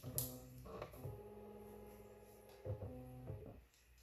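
Dymo DiscPainter CD printer running a print job: faint steady mechanical tones that change pitch a few times, then stop about three and a half seconds in.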